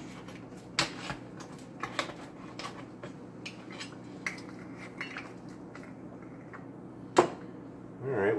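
Pizza wheel cutter rolling and scraping across a metal pizza pan, its blade clicking against the metal at irregular moments. One sharp clack, the loudest sound, comes about seven seconds in.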